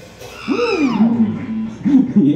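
A man's voice hooting into the microphone: a drawn-out call that rises then falls in pitch about half a second in, a short held note, and a second rising-and-falling call near the end.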